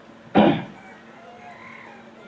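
One short, croaky vocal sound from a man speaking into a handheld microphone about half a second in, then a pause with only faint background noise.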